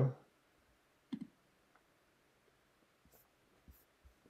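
Faint computer mouse clicks in a quiet room: a short click about a second in, then a few lighter clicks near the end.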